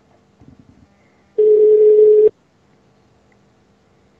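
Telephone ringback tone: a single steady beep about a second long, heard over the line while an outgoing call rings before it is answered.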